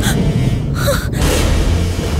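A woman gasping in fright, two sharp breaths about a second apart, over a low droning background score.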